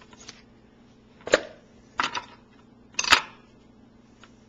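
Crisp green leaves being snapped off a head of cauliflower by hand: three sharp cracks about a second apart, the middle one a quick double and the last the loudest.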